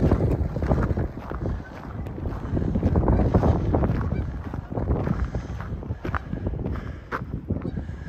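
Strong wind buffeting the microphone in a steady low rumble, with geese honking now and then overhead.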